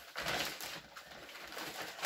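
Newspaper rustling and crinkling as a paper-wrapped item is pulled out of a plastic carrier bag, louder in the first second and softer after.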